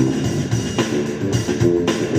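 Electric bass playing a funk line with a Yamaha MOX synthesizer keyboard, in a live funk jam with a steady beat.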